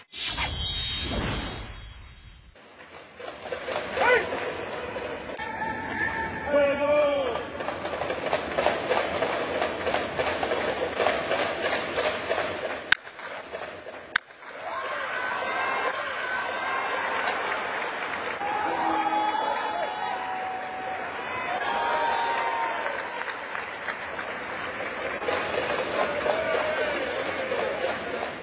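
A whoosh transition effect, then baseball stadium sound: a crowd clapping and murmuring, with a distant voice. About 13 seconds in, a single sharp crack of a bat hitting the ball.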